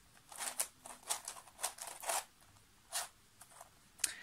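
3D-printed Axis Megaminx twisty puzzle being turned by hand: about ten short plastic clicks and rasps of its layers turning, unevenly spaced.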